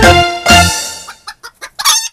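A music cue ends on a final hit about half a second in. Then a cartoon chicken sound effect clucks in a quick run of short bursts, the last one louder, just before the end.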